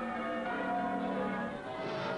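Bells pealing: several overlapping ringing tones on an old film soundtrack, marking the celebration of victory.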